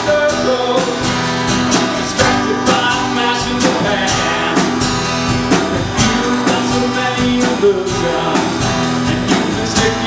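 Live song played on a strummed acoustic guitar with a drum kit keeping a steady beat, and a man's singing voice over it.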